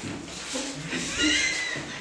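A person's high-pitched voice making a short, gliding animal-like cry, starting about a second in.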